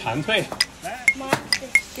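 A series of light clinks of dishes, glassware and cutlery, each a short sharp chink with a brief high ring, over background chatter.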